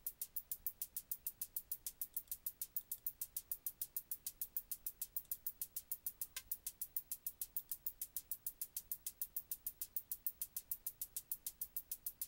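Synthesized hi-hats from Reason's Subtractor synth, sequenced by the Matrix, playing a steady looped run of short, bright ticks at about six or seven a second. A Matrix curve modulates the filter cutoff and resonance, so the hits vary in tone rather than sounding static.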